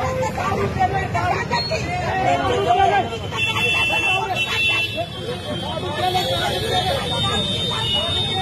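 A crowd of people shouting and talking over one another, with street traffic behind them. A steady high tone joins in a little past the middle.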